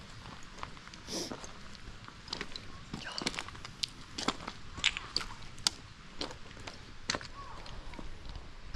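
Footsteps on a path of loose flat stones, with irregular sharp clicks as the stones shift and knock together underfoot.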